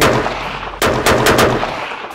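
Rifle shots from a scoped precision rifle: one shot right at the start and another a little under a second in, each with a ringing reverberant tail from the enclosed range.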